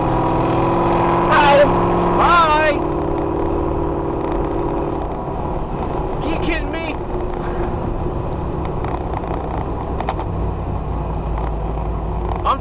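A 1993 Corvette's LT1 V8 runs at steady high speed, heard from inside the car along with wind and road noise. About five seconds in, the engine note fades and the wind and tyre noise carry on.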